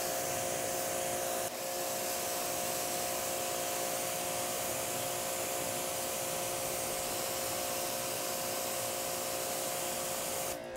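Greenworks GPW2000-1 electric pressure washer spraying a jet of water onto a painted car hood: a steady whine from the motor and pump under a steady hiss of spray.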